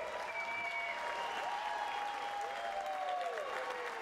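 Audience applauding steadily, with a few long whoops and a whistle gliding over the clapping.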